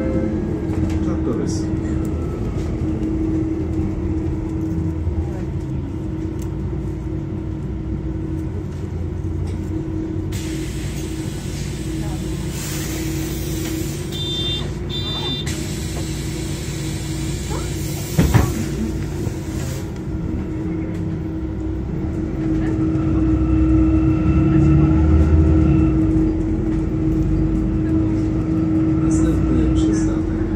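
Interior of a MAN city bus: the engine runs with a steady hum, and near the middle a long hiss of air comes in, with two short high beeps and a sharp knock toward its end, typical of the pneumatic doors working at a stop. Later the engine grows louder for a few seconds as the bus moves off.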